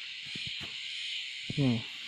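Steady high-pitched chirring of insects in a tropical garden, with a few faint light clicks.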